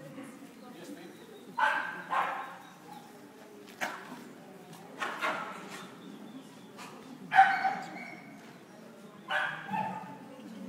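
Scottish Terrier barking repeatedly: short, sharp barks every second or two, often in pairs, the loudest about seven seconds in, over low chatter in a large hall.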